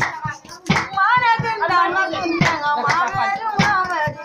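A singing voice, wavering with vibrato, over rhythmic hand percussion at about three strikes a second.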